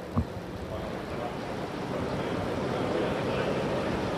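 Steady outdoor background noise on a field reporter's live microphone, growing slightly louder over the few seconds, with one short sound about a fifth of a second in.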